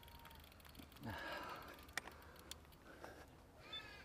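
Faint animal calls: a short call about a second in and a brief pitched call near the end, with a few light clicks around the two-second mark.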